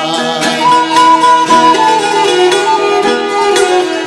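Renaissance-style instrumental passage: a hammered dulcimer's strings struck in quick repeated strokes, under held melody notes from another instrument.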